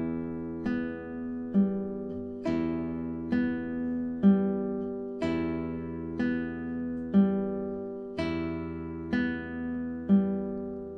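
Nylon-string classical guitar played fingerstyle in a slow, even arpeggio: a bass note and a treble note plucked together, then the open B and G strings plucked one after the other. Each cycle starts with a louder attack and repeats about once a second, the notes left ringing.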